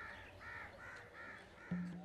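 A bird calling in a quick, even series of short calls, about four a second, until near the end.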